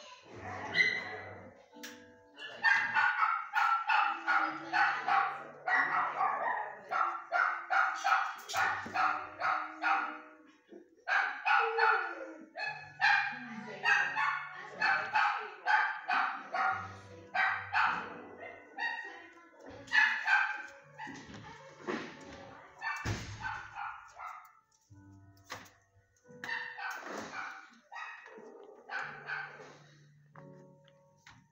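Kennel dogs barking repeatedly, in long runs of quick barks that thin out into shorter bouts with pauses in the second half.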